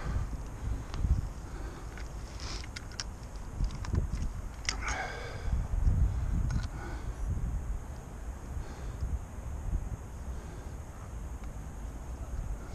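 Low rumbling handling noise on the microphone, with a few light clicks and rattles as a digital hanging scale and weigh sling are handled. A brief falling squeak comes just before five seconds in.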